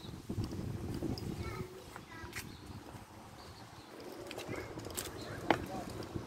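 Street ambience heard while walking: footsteps on the pavement, faint voices and a few short bird chirps, with one sharp click about five and a half seconds in.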